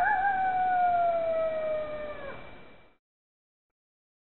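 A single coyote howl: a quick waver in pitch at the start, then one long call gliding slowly downward, fading away about three seconds in.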